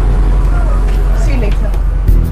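Background film score: a sustained low drone, with a wavering, voice-like melodic line over it.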